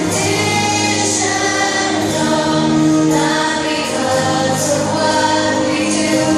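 A children's choir singing a song with instrumental music behind it.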